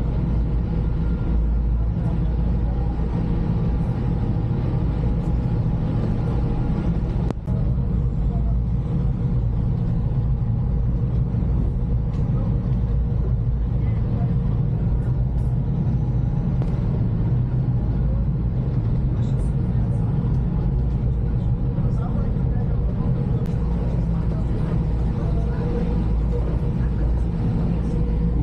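OceanJet high-speed ferry's engines running steadily under way, a deep, even drone heard from inside the passenger cabin.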